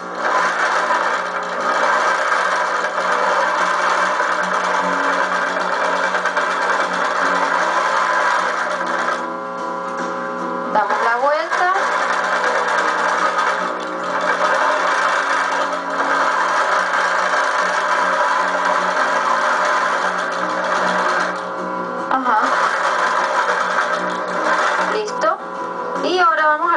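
Electric sewing machine running, stitching through fabric and quilt batting in long stretches with a few short pauses, heard through a television's speaker.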